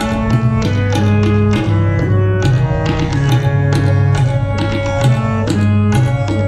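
Harmonium playing a melody in held, stepping notes over steady tabla strokes, in a Sindhi Sufi classical performance.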